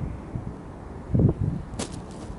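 A kite swooping past close over the camera: a low rushing whoosh of air about a second in, then a single short, sharp snap near the end.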